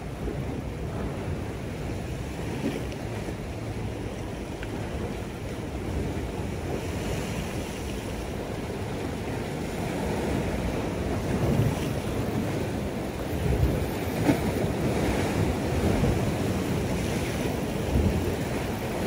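Wind buffeting the microphone over the steady wash of sea surf against the rocks, getting a little louder and gustier in the second half.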